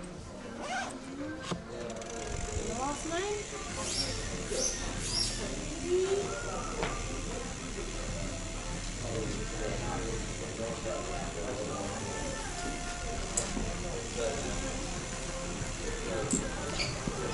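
Indistinct voices and background music in a large shop hall, with a few scattered clicks.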